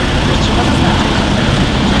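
Steady road traffic noise from vehicles passing on the street, loud enough to fill the pause.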